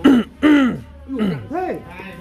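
A man's voice in four short vocal sounds, each rising and falling in pitch, like brief exclamations or throat-clearing.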